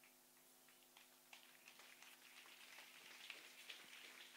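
Near silence: a faint steady hum with scattered faint ticks and crackles that grow more frequent toward the end.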